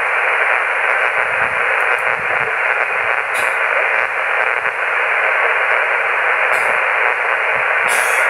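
HF amateur radio transceiver receiving on 7.085 MHz lower sideband with no station transmitting: a steady hiss of band noise, narrowed to a thin, telephone-like range by the receiver's filter, with a few faint clicks.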